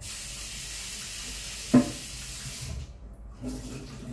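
Kitchen tap running as a steady hiss for almost three seconds, then shut off, with one sharp knock partway through, like something set down in the sink; faint clatter follows.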